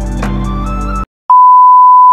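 Music with a beat cuts off about a second in. After a short silence, a loud, steady single-pitch test-tone beep starts, the kind played with TV colour bars.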